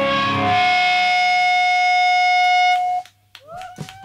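Live rock band with distorted electric guitars and drums ending a song on a held, ringing final chord with one strong steady tone, cut off sharply about three seconds in. A few faint clicks and short gliding squeals follow in the quiet.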